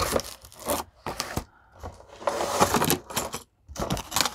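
Cardboard box and packaging rustling and scraping as items are pulled out of the box, in several short irregular bursts with a few sharp clicks, the loudest about two and a half seconds in.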